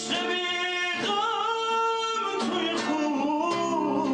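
A man singing long held notes with vibrato, accompanying himself on a classical guitar.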